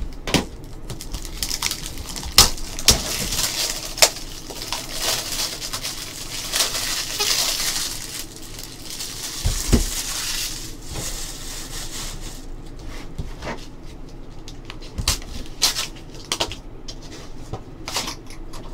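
A cardboard trading card box being handled and opened: scattered sharp taps and clicks, a stretch of crinkling plastic wrapper about six to ten seconds in, and a dull thump near ten seconds.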